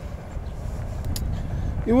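Steady low rumble of outdoor background noise in a pause in speech, with a faint click about a second in. A man's voice begins right at the end.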